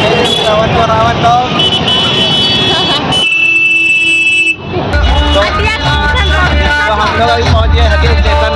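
Busy festival street at night: crowd chatter and voices, then a vehicle horn held for a bit over a second about three seconds in. After it, loud music with a heavy bass starts up about five seconds in.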